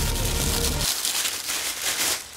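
Crinkly packaging wrapping rustling and crackling as a dog bowl is pulled out of it.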